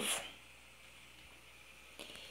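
The tail of a woman's word in the first moment, then near silence: faint room tone.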